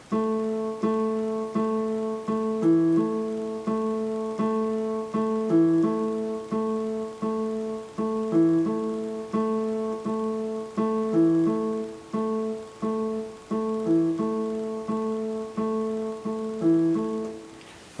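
Yamaha digital keyboard on a piano voice, played by the left hand as a bass line that goes back and forth between A and E. The low A is struck repeatedly, about two notes a second, and it drops briefly to E about every three seconds.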